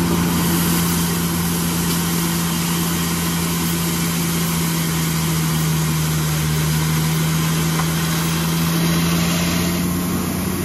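Tata tipper truck's diesel engine running steadily with a strong, even hum while its hydraulic hoist tips the loaded bed. Gravel slides out of the tipper body onto the pile as a continuous rushing hiss.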